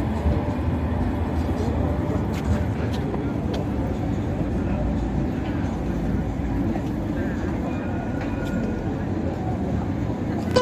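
Steady city-street traffic rumble as a light rail tram moves away, with people talking in the background.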